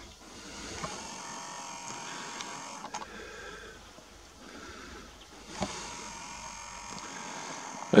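Faint whir of a Nikon Coolpix P900's zoom motor as the lens zooms out, heard through the camera's own microphone over quiet outdoor ambience, with a few soft clicks.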